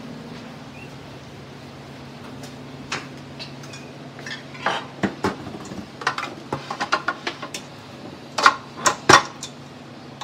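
Stainless steel stand-mixer bowl clanking and knocking as it is handled and set onto the mixer. The knocks are scattered at first, come thicker about halfway through, and the two loudest fall near the end, over a low steady hum.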